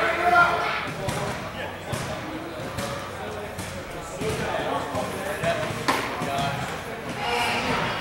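Voices of players talking across a large, echoing indoor training hall, with scattered sharp knocks of baseballs; the loudest single crack comes about six seconds in.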